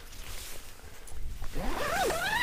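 Nylon tent fly rustling as the vestibule door is handled, with a zipper being worked, over a low rumble of wind on the microphone. A short rising, wavering whine comes in near the end.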